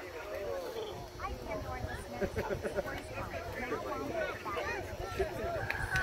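Several men talking and calling out at once, overlapping and indistinct, with no single voice clear.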